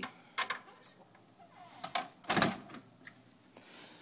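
Handling noise: a few light clicks, then a knock and a louder scuffing thump about halfway through, with a small click near the end.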